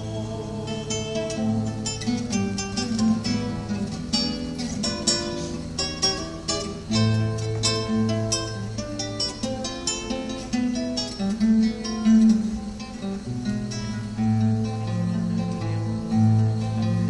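Acoustic guitar playing an instrumental passage: a plucked melody over low bass notes.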